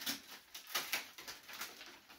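Christmas wrapping paper crinkling and tearing as a present is unwrapped by hand, in short irregular rustles and rips.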